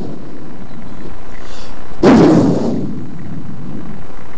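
One sudden, loud, blast-like burst about two seconds in, dying away over about half a second, over a low background of room and crowd noise.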